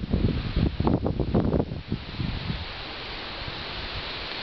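Wind buffeting the microphone in irregular low gusts for the first couple of seconds, then settling into a steady wind hiss.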